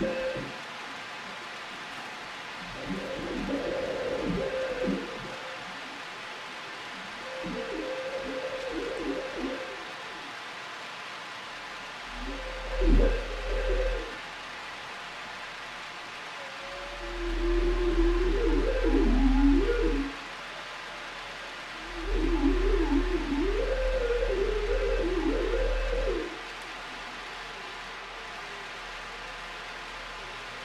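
Experimental ensemble music: six short phrases of wavering, sliding tones a few seconds long, separated by pauses. The later phrases sit over a deep hum.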